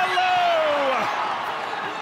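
A TV commentator's excited, drawn-out call of a player's name, falling in pitch over about a second, over stadium crowd noise that fades toward the end.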